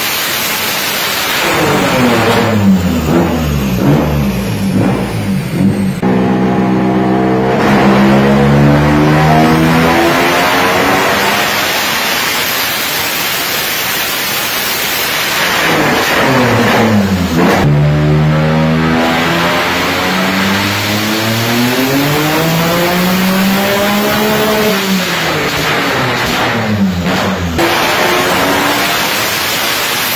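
Turbocharged Subaru WRX race engine, built to about 1300 wheel horsepower on 36 psi of boost, running at full throttle on an all-wheel-drive chassis dyno. The revs climb in a first pull, drop away, then climb again in a long second pull and wind down near the end.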